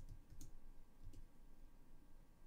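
A few isolated, faint computer keyboard key clicks, spaced well apart, over a low steady hum.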